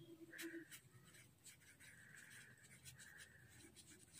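Faint scratching of a pencil on paper as a word is handwritten in several short strokes.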